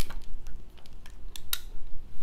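A few short, sharp clicks and taps of small objects handled on a tabletop, the sharpest about a second and a half in.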